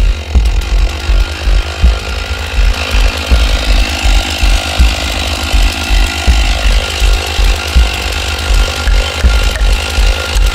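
Gasoline chainsaw idling after a cut, its engine running with an uneven, pulsing beat.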